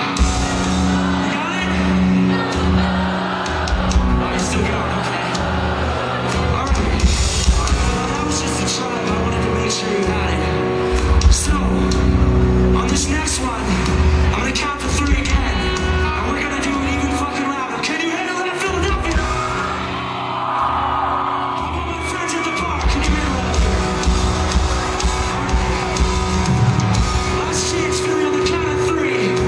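Rock band playing live and loud in a large hall, with the crowd singing along, heard from among the audience.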